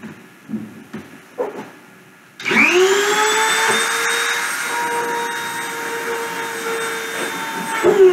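Dremel rotary tool used as a mill spindle spinning up about two and a half seconds in: a whine that rises quickly in pitch and then holds steady at about 30,000 RPM. It runs free, with no load, before the copper wire touches the ceramic.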